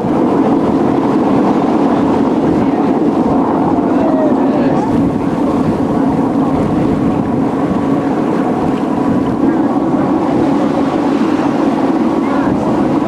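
Motor ship Oldenburg's diesel engine running steadily underway, a loud even drone, with the rush of the bow wave along the hull and wind on the microphone.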